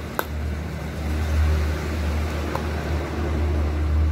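A steady low rumble, with a sharp click near the start as a plastic bottle cap is screwed on, and a faint tick later.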